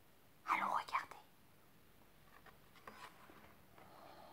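A brief soft, whispered voice about half a second in. Then a few faint small ticks as the stiff cardboard page of a board book is turned.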